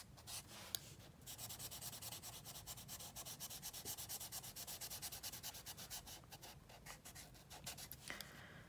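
Felt-tip marker nib rubbing on paper in quick back-and-forth strokes, a faint, steady scratching as a section of a colouring page is filled in, with one light click about a second in.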